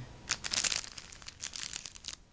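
Crinkling of a shiny plastic Hot Wheels Mystery Models packet being handled, a dense run of crackles about half a second in followed by scattered lighter crackles.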